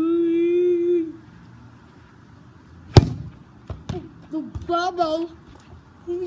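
A voice holds a long note for about a second. About three seconds in comes one sharp smack of a long pole swung into a football, followed by two lighter knocks and short vocal cries.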